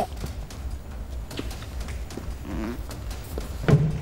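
A man acting out choking on food, making a few short strained throaty gagging sounds over a steady low hum, with a louder sudden sound near the end.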